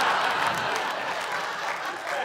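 A large theatre audience applauding and laughing, the applause slowly fading.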